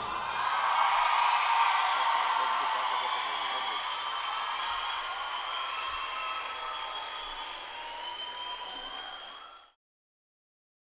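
Audience applauding and cheering with high-pitched shouts, loudest at first, then slowly dying away before being cut off suddenly near the end.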